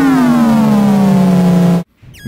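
Several synthesized tones from the Artikulator iPad app, played back from drawn curves, sliding down in pitch together and levelling off low. The sound cuts off suddenly near the end.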